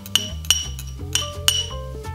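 Background music, with about four sharp clinks of a metal fork against ceramic bowls as chopped cilantro is scraped into softened butter.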